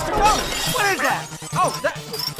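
Dishes and glass smashing in a cartoon sound effect, mixed with a run of short rising-and-falling pitched chirps.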